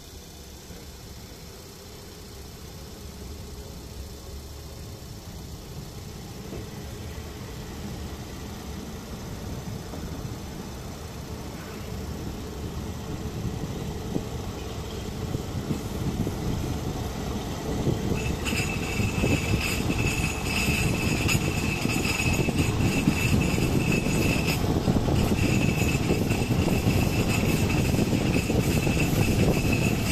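Passenger train carriage pulling away and picking up speed, heard through an open window: wheel-on-rail running noise growing steadily louder. About two-thirds of the way through, a steady high ringing tone comes in, breaking off briefly once.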